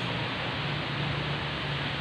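Steady background hiss of room noise with a faint low hum underneath, no distinct events.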